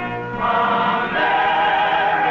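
Choral music: a choir singing held chords, moving to a new chord about half a second in.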